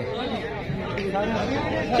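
Men's voices talking over one another: untranscribed chatter, with no other sound standing out.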